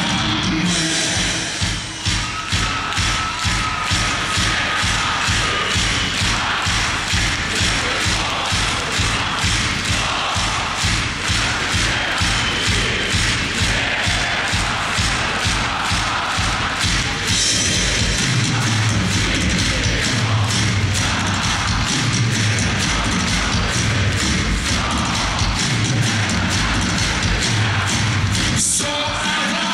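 A rock band playing live in a large arena, a steady driving drum beat to the fore, with a crowd behind it. About halfway through, low bass notes come in more strongly.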